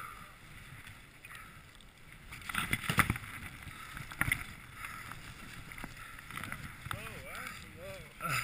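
Knocks and clatter of skis, poles and a chairlift chair as the riders sit down and the chair moves off, the loudest knocks about three seconds in and another just after four seconds. Low voices near the end.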